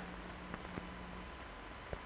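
Faint steady hiss of an old 16mm film soundtrack, with a low hum and a few faint clicks.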